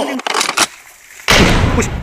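A sudden loud boom-like hit with heavy bass a little past halfway, ringing on for most of a second, after a brief quieter, noisy stretch.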